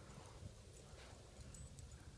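Near silence: a faint low background rumble with a few faint, scattered ticks.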